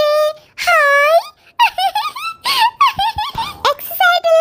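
A high-pitched voice making squeaky, sliding wordless sounds, rising and falling in pitch, with a couple of soft knocks about three seconds in.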